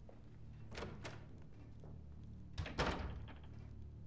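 A door closing with a soft thunk about two and a half seconds in, after two light clicks, over a low steady hum.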